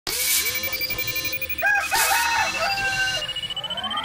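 A rooster crowing, with a thin electronic tone slowly rising in pitch beneath it; near the end several tones sweep upward together in a rising whoosh.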